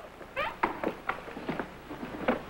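Footsteps of several men walking on a hard studio floor, irregular steps with short shoe squeaks, one rising squeak about half a second in.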